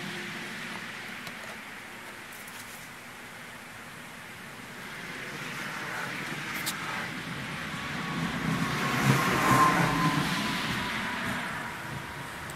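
A car passing on a nearby road: a broad rushing sound that slowly builds, is loudest about nine to ten seconds in, and then fades away.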